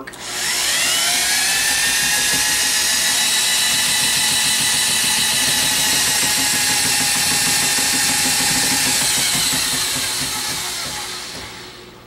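Electric drill driving a drum-type power drain snake, spinning the drum and cable as the cable is pushed into a kitchen sink drain line. The motor spins up with a rising whine, runs steadily, then slows and fades over the last few seconds.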